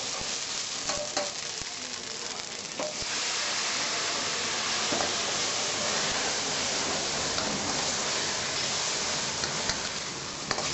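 Food sizzling and frying in pans over a high gas flame in a restaurant kitchen, with a few light knocks of utensils on the pans in the first seconds. The sizzle gets louder about three seconds in and then holds steady.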